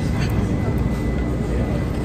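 Restaurant dining-room ambience: a steady low rumble with faint background voices.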